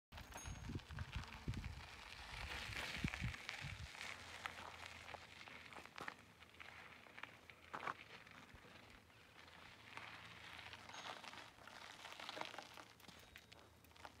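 Faint outdoor sound: wind buffeting the microphone in a low, uneven rumble for the first four seconds, then light scattered crackles and clicks.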